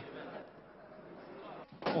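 Faint, steady background room noise from the news footage: an indistinct murmur of ambience in a large hall, with no clear voices or distinct events. A man's narrating voice begins near the end.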